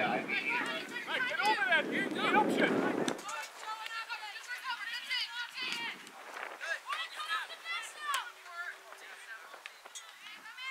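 Several voices calling and shouting at once during a soccer game, loudest in the first three seconds and fainter and more distant after that, with a few short sharp knocks.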